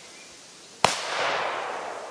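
A Hestia K0204 'Super Petardy' firecracker of about 2.5 g exploding: one sharp bang about a second in, followed by a fading echo.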